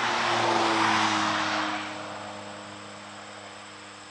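A vehicle passing by: a rushing noise swells over about the first second, then fades away, with a slightly falling tone and a steady low hum underneath.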